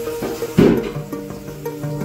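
Background music with steady held notes, and one sharp knock about half a second in.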